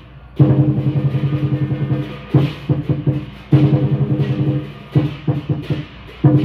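Lion dance drumming: a large drum beaten in fast rolls of a second or two at a time, broken by a few single strokes and short pauses.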